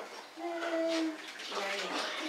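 A young child's short vocal sound, one held note of about half a second starting about half a second in, followed by fainter broken voice sounds and light clatter in a small room.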